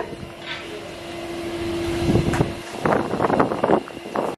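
Wind gusting on the microphone, growing louder from about a second in, with rough buffeting near the end.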